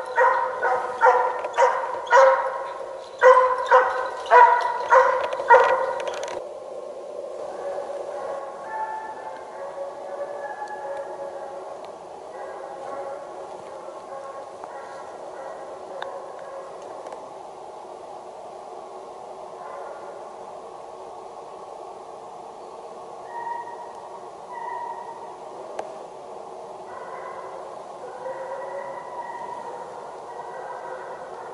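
Russian hound baying as it runs a hare's trail. For the first six seconds the barks are loud and close, about two a second. They then give way to fainter, more distant baying that carries on.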